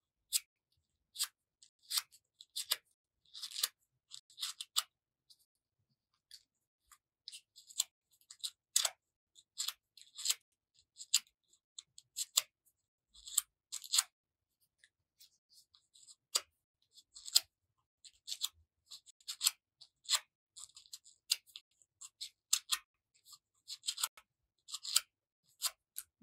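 Scissor blade drawn along paper flower petals to curl them: a string of short, dry, high scrapes and clicks at an irregular pace, with a short lull a few seconds in.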